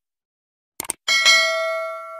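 Subscribe-button animation sound effect: two quick clicks, then a notification bell ding about a second in, ringing with several clear tones that fade slowly.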